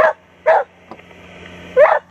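A dog barking three times: two quick barks about half a second apart, then a third near the end.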